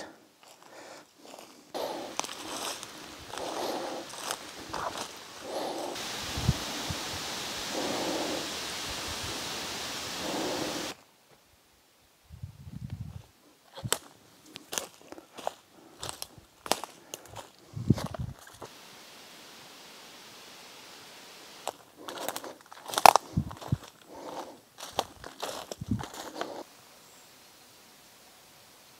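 Footsteps on a forest floor: twigs and dry leaf litter crunching and snapping underfoot in irregular steps.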